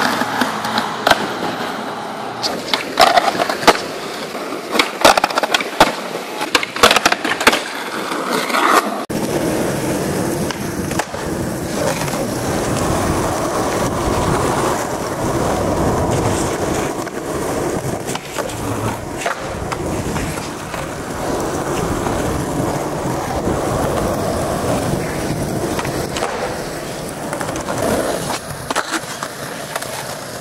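Skateboard on concrete and pavement: a string of sharp clacks, scrapes and landings in the first third. Then wheels roll steadily over rough ground, with a few board clacks.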